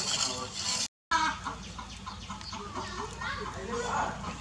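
Short background bird calls, repeated and uneven, with a person's voice among them. The sound cuts out completely for a moment about a second in.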